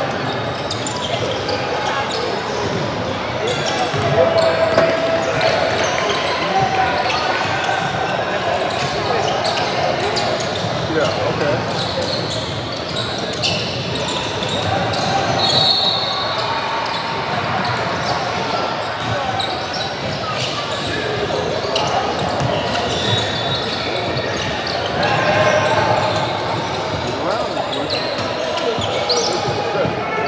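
Indoor basketball game in a large, echoing gym: a ball bouncing on the hardwood court, sneakers squeaking in short high chirps, and players and onlookers talking and calling out in an overlapping, unintelligible din.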